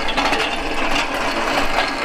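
Steel engine stand on small casters being pushed across a shop floor under the weight of a V8 engine, its wheels and frame rattling and clattering without a break. The casters roll poorly.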